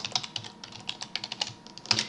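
Typing on a computer keyboard: a quick, irregular run of key clicks, about a dozen over two seconds, as a line of code is typed, with a louder keystroke just before the end.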